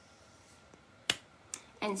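A single sharp click about a second in, then a fainter click, in a quiet small room; a short spoken word follows near the end.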